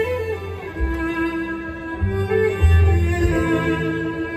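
Live band playing an instrumental passage with no singing: violin lines over strummed acoustic guitar, with low bass notes underneath.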